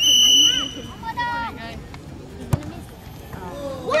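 A whistle blown once for about a second, then about two and a half seconds in a single sharp thud as a football is kicked in a penalty shot.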